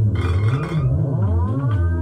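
Loud improvised electronic music from synthesizers: a deep bass drone and stacked tones whose pitch slides down and back up like a siren, settling on a steady chord near the end, with a hiss of noise in the first second.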